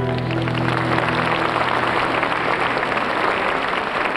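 Audience applauding while the song's last held chord fades out in the first second or so.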